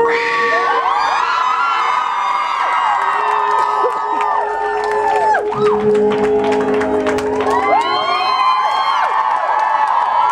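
Live rock concert crowd screaming and cheering, many high voices at once, over the band's closing notes: a long held tone and a run of sharp drum or cymbal strikes in the middle.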